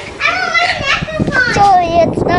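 A young girl's high-pitched voice, talking and vocalizing.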